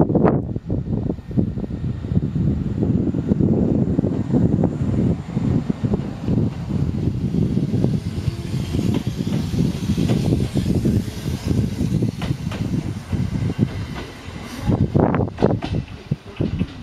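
Kintetsu 2013 series electric train pulling away from a station and running close past, with repeated knocks from its wheels on the rails. It grows quieter as it runs off near the end.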